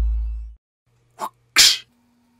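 A deep bass rumble dies away in the first half-second. About a second and a half in comes a sneeze in two parts, a short catch and then a louder burst.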